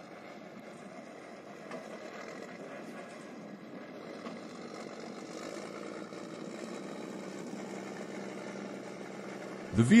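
The 12-cylinder multi-fuel engine of a Vityaz DT-30 tracked carrier running steadily as it crawls through a bog. The sound grows slowly louder as the vehicle comes closer.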